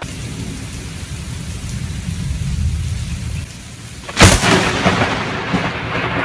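Thunderstorm: a low rumble of thunder over a steady hiss of rain, then a sudden, loud crack of a lightning strike about four seconds in, followed by more rain and rumble.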